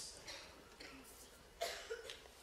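A quiet pause in a room, then a short, soft cough about one and a half seconds in.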